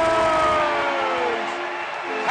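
Arena goal horn blaring over a cheering crowd, its stacked tones sagging in pitch and dying away in the second half.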